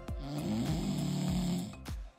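English bulldog snoring: one long, rough snore lasting most of the two seconds, over background music with a steady beat.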